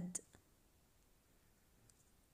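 Near silence: room tone, with two brief faint clicks just after the start and another faint click near the end.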